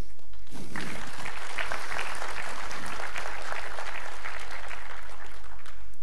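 Audience applauding, the clapping starting about half a second in and staying steady.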